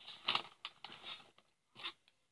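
Pens and stationery being pushed into a pencil case: a run of short rustles and clicks, several in the first second or so and one more near the end.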